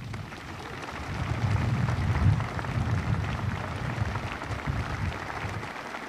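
Large crowd of service members applauding, with a low rumble underneath; it swells over the first couple of seconds and eases off near the end.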